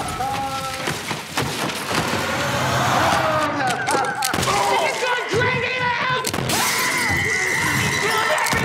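A man's anguished screaming and wailing over crashing and shattering debris.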